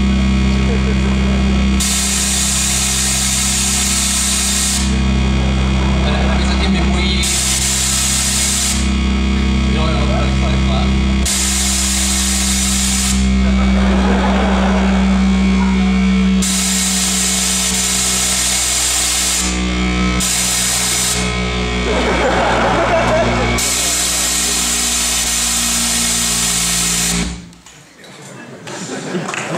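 Loud electronic sound effects through a hall's loudspeakers: a steady low drone with bursts of harsh hiss switching on and off every few seconds, and a distorted voice twice. The whole sound cuts off suddenly just before the end.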